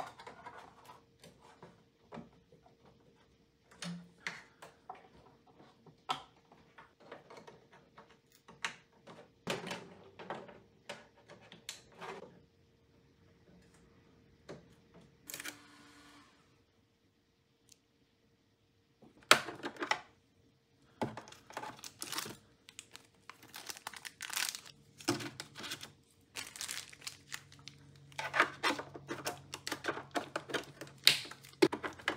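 Hands unpacking and fitting a Bambu Lab AMS: scattered clicks and knocks of plastic parts being handled and plugged in, with crinkling and tearing of protective plastic film and stickers being pulled off. A faint steady hum runs underneath, joined by a lower hum about 25 s in.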